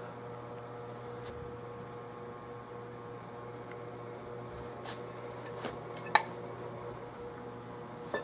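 A steady hum runs throughout, with a few light clicks and knocks of metal gun parts being handled on the workbench, the sharpest a little after six seconds in.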